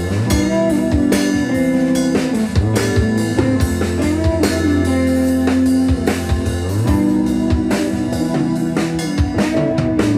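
Live indie rock band playing an instrumental riff with no vocals: a Pearl drum kit keeping a steady beat under electric guitar, electric bass and keyboard.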